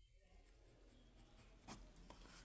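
Faint scratching of a pen writing on lined notebook paper, with a light click near the end.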